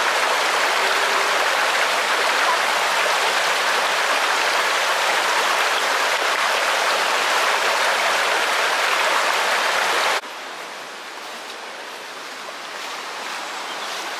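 A small rocky river rushing and churning over stones, a steady rush that drops abruptly to a quieter rush about ten seconds in.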